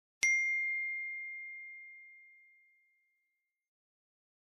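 A single bell-like chime struck once about a quarter second in, a clear high tone that rings out and fades away over two to three seconds.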